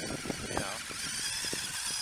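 Battery-powered RC Polaris 800 RUSH Pro-R snowmobile running across snow: a steady high-pitched whine from its electric motor and drivetrain, with a hiss from the track and scattered ticks.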